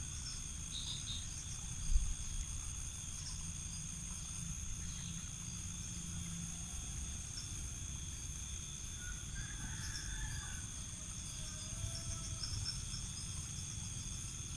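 Steady high-pitched chorus of insects over a low rumble, with a single thump about two seconds in.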